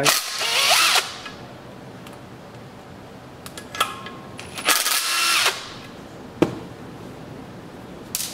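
Cordless impact driver backing out the two 8 mm screws that hold the oil injection pump on a Rotax two-stroke engine. It makes two runs of about a second each, one at the start and one about five seconds in, each rising in pitch as it spins up. A single sharp knock comes about six and a half seconds in.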